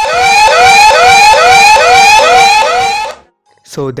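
Smartphone anti-theft alarm app sounding its siren through the phone's speaker: a loud electronic tone that sweeps up in pitch and drops back, a little over twice a second, then cuts off about three seconds in. It is the alarm that goes off when someone takes the phone away without the passcode.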